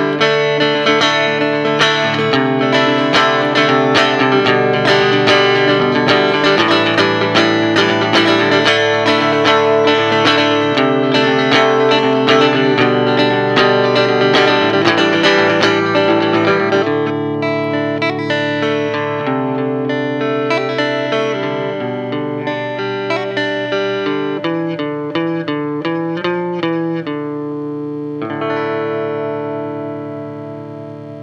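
Electric and acoustic guitars playing an instrumental passage with no singing: fast, dense strumming for about the first half, thinning to sparser picked notes and chords, then a last chord left ringing and fading near the end.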